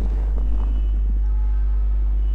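Steady low electrical hum with a buzzy edge and a few faint steady whistling tones above it.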